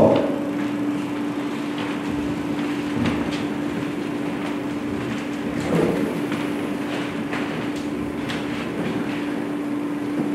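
A steady low hum over even background noise, with a couple of faint bumps about three and six seconds in.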